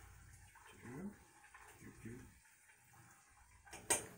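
Quiet stirring of ramen noodles in a pot of boiling water, with one sharp clink of the spoon against the pot near the end.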